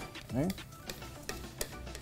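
Wooden spoon stirring rice in water in a stainless steel pot, scraping loose the grains stuck to the bottom, heard as a run of short irregular scrapes and taps.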